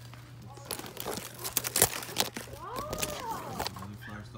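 A run of sharp crackles and clicks, loudest a little before halfway, and a child's distant drawn-out call that rises and falls near the end.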